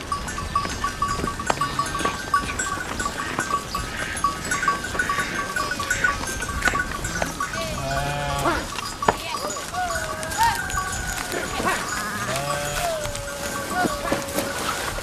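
Sheep bleating several times in the second half, over a steady repeated high chirping.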